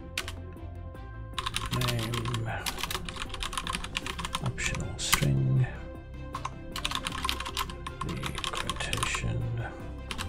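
Typing on a computer keyboard: quick runs of keystrokes with short pauses between them, over background music.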